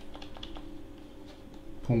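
Faint, quick, irregular clicking of a computer mouse and keyboard over a low steady hum, with a man's voice starting near the end.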